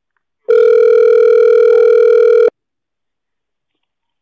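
Telephone ringback tone, heard on the calling end while the called line rings: one steady two-second ring tone that starts about half a second in and cuts off sharply.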